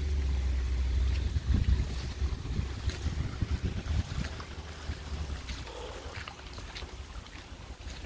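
Wind buffeting a phone's microphone: a low rumble, heaviest in the first few seconds and easing off after about five seconds, with a few faint clicks.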